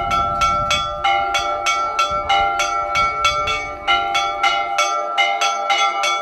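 Church bells rung in quick, even strikes, about four a second, several bell tones ringing on together in a festive peal.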